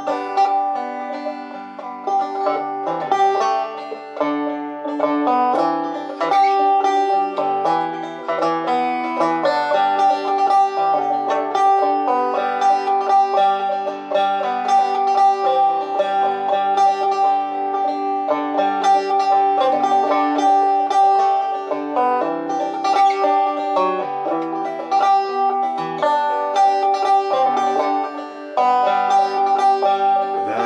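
A banjo picked solo: a steady, rhythmic run of bright plucked notes with one high note ringing again and again, the instrumental introduction before the singing comes in.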